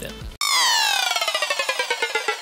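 Kilohearts Phase Plant software synthesizer playing a glitch effect patch: a bright tone of many partials starts abruptly and slides steadily downward in pitch, chopped into a rapid stutter.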